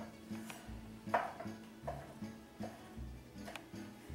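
Kitchen knife dicing tomatoes on a wooden cutting board: sharp taps of the blade on the board, about one every half second, over quiet background music.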